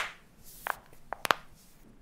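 Handling noise at a desk: a sharp click at the start, then a few light taps and a brief rustle around the middle, as of hands and papers being moved.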